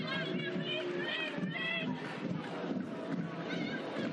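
Football stadium crowd noise, a steady murmur from the stands, with a few short high-pitched calls from fans in the first two seconds.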